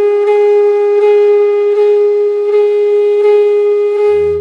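A single long note from a wind instrument, held steadily at one pitch in background music.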